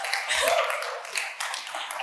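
Audience clapping with a brief cheer, dying down.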